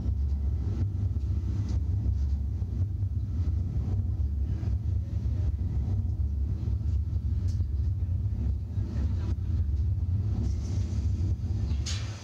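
A steady low rumble with no speech, heavy in the bass, with a few faint clicks over it.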